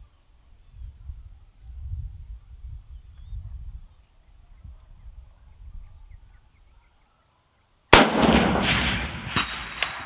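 A single shot from a USMC MC1 Garand sniper rifle in .30-06, about eight seconds in: a sharp crack followed by a long echo that fades over about two seconds. Before it there is only a faint low rumble.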